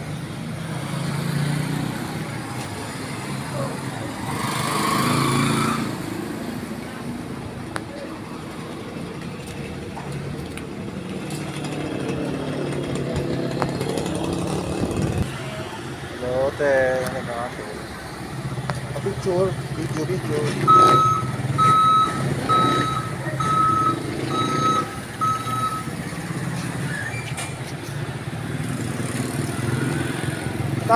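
Street traffic with vehicle engines running steadily, a brief hiss about five seconds in, and a vehicle's reversing beeper sounding a string of about eight evenly spaced beeps midway through.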